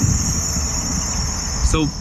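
Street traffic rumbling, with a steady high-pitched whine from a passing vehicle that slowly falls in pitch.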